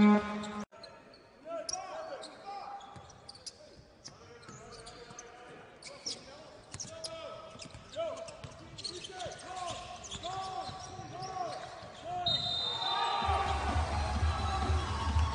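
Basketball game sound in an arena: a ball bouncing on the court, with short knocks and players' voices. Music comes in near the end.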